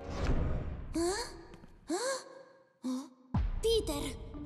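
A cartoon boy's breathy gasps and sighs: two rising, breathy sounds about a second apart, then shorter ones near the end. A low, noisy swell opens it.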